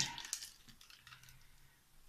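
Faint light clicks of a diamond-painting wax pen picking resin drills out of a plastic drill tray, a few of them about half a second in.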